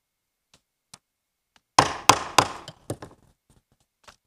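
Wooden gavel striking about four times in quick succession, starting about two seconds in, to call the meeting to order.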